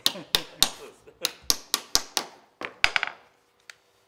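Hammer striking a woodworking chisel, cutting into the edge of a wooden door: about eleven sharp taps, three or four a second, ending a little after three seconds in.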